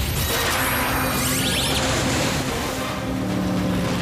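Cartoon sound effects of a bicycle-boat speeding across water: a steady rushing of water and spray with a few high whooshing sweeps, over background music.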